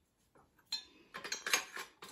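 Steel spanner and metal spacer clinking against a steel A-frame bracket as they are fitted: one sharp click, then a quick run of metallic clinks in the second half.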